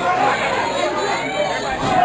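Pro wrestling audience chattering and calling out, many voices overlapping with no one voice standing out.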